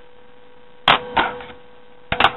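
Scissors picked up from a wooden table: two sharp clacks close together about a second in, over a faint steady hum.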